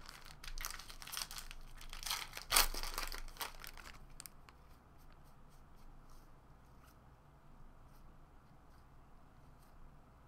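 Foil wrapper of a jumbo pack of baseball cards being torn open and crinkled, in a run of rustling bursts over the first four seconds, loudest about two and a half seconds in. After that, only faint light ticks of the cards being thumbed through.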